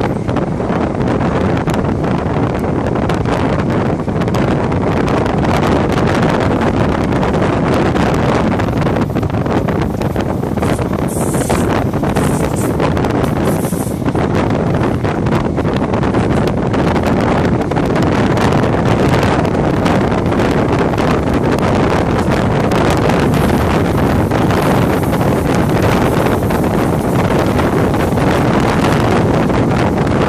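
Wind buffeting a microphone held out of an open window of a moving train, over the steady running rumble of the carriage on the rails. Three short high hisses come a little before halfway.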